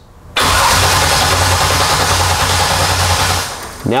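Electric starter motor cranking a drag car's engine steadily for about three seconds without it catching, then stopping. It is cranking under load in a voltage-drop test, with over 2 volts lost between battery and starter through an undersized main cable.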